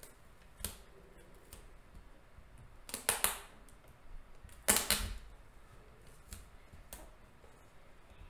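Light, scattered clicks of a computer keyboard and mouse, with two louder bursts of quick clatter about three and five seconds in.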